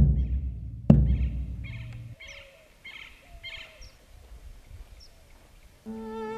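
A deep drum struck twice, about a second apart, each hit ringing low and dying away. Under and after it, birds chirping in short repeated calls.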